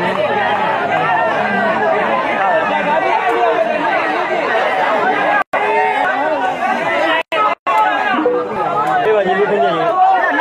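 A large crowd of spectators chattering, many voices talking over one another. The sound cuts out completely three times for a split second, once about halfway and twice close together a moment later.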